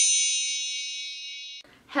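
Bright, high chime sound effect of several ringing tones, fading steadily and then cut off abruptly about one and a half seconds in.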